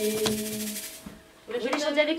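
The final held note of a children's song, women's voices with ukulele, with two quick shakes of a hand rattle at the start; it dies away about a second in. After a short gap a woman's voice comes in, rising in pitch, near the end.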